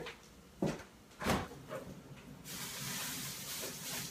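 Kitchen freezer being opened: two short knocks, then a steady hiss from about two and a half seconds in while the freezer stands open.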